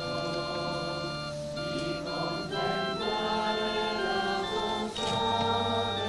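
Church organ music playing slow, sustained chords that change every second or so, growing a little louder about halfway through.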